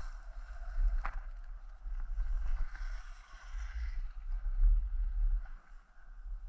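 Wind buffeting the microphone of a moving camera, with the hiss of skis sliding and carving over groomed snow; the loudness swells and fades with the turns, and there is a sharp click about a second in.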